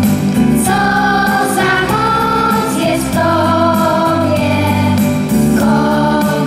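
Children's voices singing a Polish legion song into microphones, with a choir and keyboard accompaniment, the melody running on without a break.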